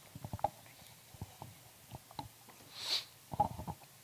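Handling noise from a handheld microphone: scattered soft knocks and rustles, with a short hiss about three seconds in followed by a quick cluster of knocks.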